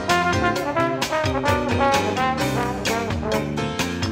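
Instrumental jazz from a vinyl record: a brass section of trumpets and trombone playing over drums, percussion and bass, with a steady beat.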